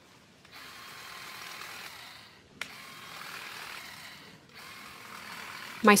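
Small cordless Stihl trimmer running in three bursts of a second or two each, with short pauses between, as it cuts back hosta foliage.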